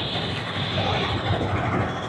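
Aircraft noise: a high whine over a low rumble, with a wavering hum in the middle, the whine fading near the end.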